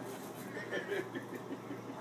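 Faint murmur of background voices in a bar room, with no distinct clack of pool balls standing out.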